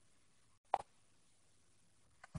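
A single short pop about three-quarters of a second in, right after a split-second dropout in the audio, over a faint steady low hum.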